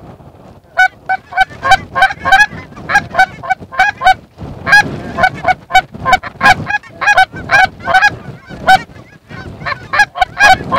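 Geese honking: a rapid, overlapping chatter of short, loud honks and clucks, several a second, over a low rumble of wind on the microphone.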